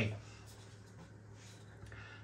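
Quiet pause with a low steady hum, and a faint scratchy rustle of an aluminium beer can being turned over in the hand.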